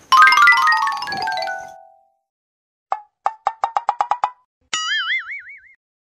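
Cartoon comedy sound effects: a quick falling run of bell-like notes, then a string of short plucked pops that speed up, then a wobbling boing.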